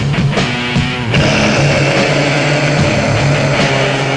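Black/death metal band on a 1992 cassette demo recording, playing distorted electric guitar riffs. About a second in, the choppy riffing gives way to a held, sustained passage, and it turns choppy again near the end.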